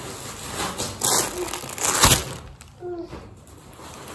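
Rustling and crinkling of a shopping bag and grocery packaging as items are taken out, in two short bursts about a second apart, with a brief murmured voice near the end.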